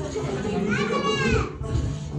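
Party chatter from several people at tables, with background music. About a second in, one high voice rises and falls in a single drawn-out exclamation that stands out above the chatter.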